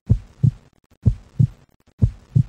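Heartbeat, lub-dub: two pairs of short low thumps, the second thump of each pair about 0.4 s after the first, a pair about once a second.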